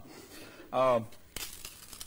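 Crisp taco shells being crushed by hand, a light crackling and crunching in the second half.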